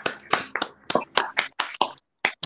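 A few people clapping over a video call: quick, irregular hand claps, about half a dozen a second.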